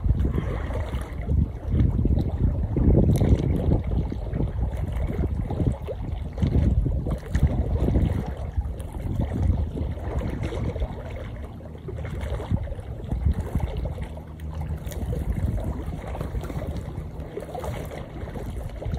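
Wind buffeting the microphone in uneven gusts, a low rumbling noise, with faint lapping of water at the shore.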